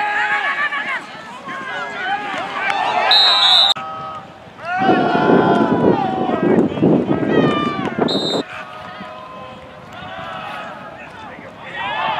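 Players and sideline voices shouting over one another during an American football play, loudest in the middle. A short high whistle blast sounds about three seconds in and another about eight seconds in.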